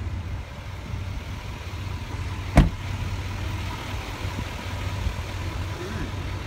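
2019 Chevrolet Silverado 2500HD engine idling steadily, with one sharp thud about two and a half seconds in as the driver's door is shut.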